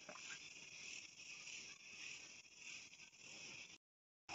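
Near silence: a faint steady high-pitched hiss with a few soft rustles, cutting out abruptly just before the end.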